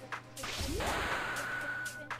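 Electronic whoosh sound effect: a burst of noise about half a second in, with a tone that slides upward and then holds steady, over background electronic music.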